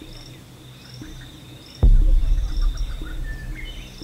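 A burning house flaring up: a sudden low rumbling whoosh about two seconds in that slowly dies down, over a steady high drone of insects.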